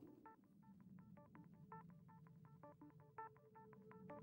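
Faint run of short electronic beeping notes, several a second, like the quiet intro of a music track; a steady held tone joins about two-thirds of the way through.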